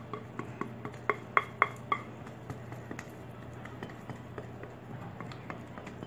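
A silicone spatula scraping and knocking against a glass mixing bowl as soft bread dough is worked out of it: a quick run of light clicks, some with a brief ring, in the first two seconds, then only faint ticks.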